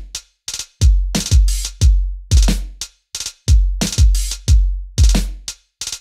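Logic Pro Drum Machine Designer 'Boom Bap' kit playing a step-sequenced drum loop at 90 BPM. A deep kick with a long low decay plays against snare and hi-hat hits. Some hi-hat notes drop out at random because the hi-hat's chance setting has been lowered.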